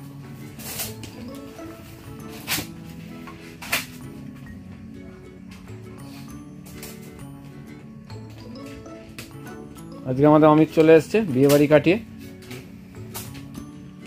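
Background music with steady held notes, three sharp clicks in the first four seconds, and a loud wavering voice for about two seconds near the end.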